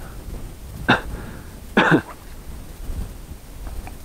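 A person coughing twice, short bursts about a second apart, over a low wind rumble on the microphone.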